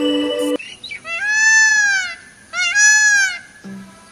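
Peacock giving two loud, wailing calls about half a second apart, each lasting about a second and arching up then down in pitch. The tail of an electronic music jingle cuts off about half a second in, and a pulsing music beat starts near the end.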